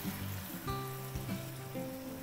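Water poured from a glass jug into a hot pot of shredded red cabbage cooking in butter, over background music with long held notes.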